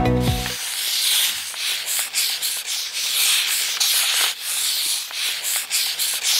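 Marker-pen scribbling sound effect: a run of scratchy strokes of uneven length, as lettering is written and struck through. A music sting fades out in the first half second.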